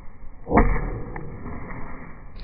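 A sudden whoosh of a leg swinging through the air in a spinning kick, a little over half a second in, fading quickly. A faint tick follows about half a second later.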